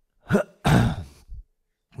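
A man clearing his throat close to a headset microphone: a short catch, then a longer noisy clear lasting about half a second, and a faint short one after it.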